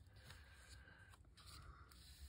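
Near silence: room tone, with faint handling of paper and a playing card on a table.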